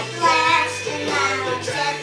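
A young child singing along over a rock song playing in the background.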